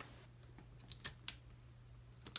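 A few faint, light clicks in quick succession around the middle, from fingers handling a bare cassette tape-drive mechanism, over a low steady hum.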